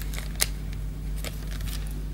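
Light handling noises from hands working on baking paper: a few soft clicks and rustles, with one sharper click about half a second in, over a steady low hum.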